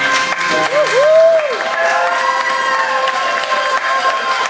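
Audience applauding and cheering, with rising-and-falling whoops, as a song ends and the piano's last chord rings on.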